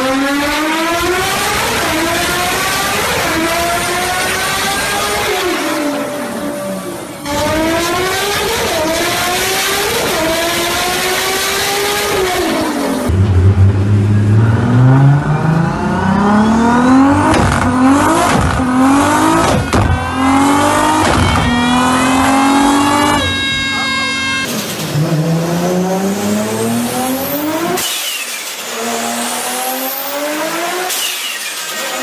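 Turbocharged Mk4 Toyota Supra engines on chassis dynos, in several back-to-back pulls: each engine revs hard through the gears under full throttle, its pitch climbing and then dropping at every shift. The sound changes abruptly a few times as one run cuts to the next.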